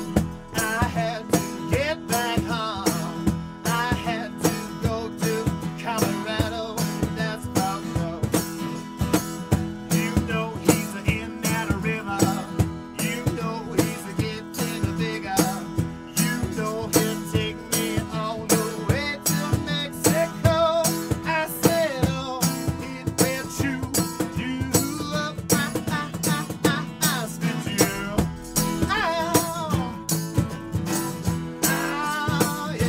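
Live acoustic band: two acoustic guitars strummed together, a cajon keeping a steady beat, and a man singing the lead vocal.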